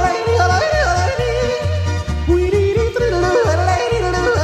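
Alpine folk-pop song with a voice yodeling in quick leaps between low and high notes over a steady bass beat.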